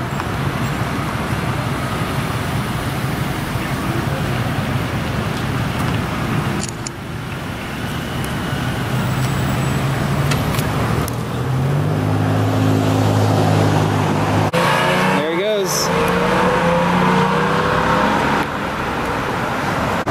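Steady street traffic noise. Through the second half, a nearby vehicle engine runs louder and closer as a police SUV pulls out of the parking lot.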